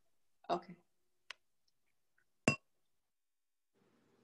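A brief spoken sound about half a second in, then two sharp clicks a little over a second apart, the second one louder with a short ring.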